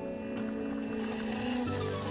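Background music with sustained chords, shifting to new notes near the end.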